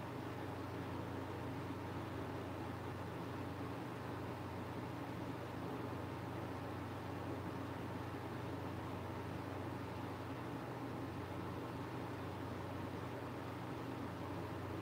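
Steady hum and hiss of an electric fan running, with no change through the stretch.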